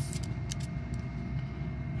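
Steady low background rumble with a faint steady whine, and a few faint light clicks of metal RF connectors being handled against a NanoVNA.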